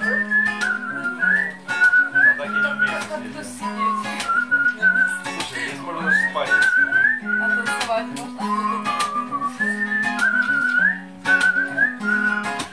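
A man whistling a melody over his own strummed acoustic guitar. The whistle gives one clear tone, stepping and gliding in pitch, over steady strums and repeated bass notes.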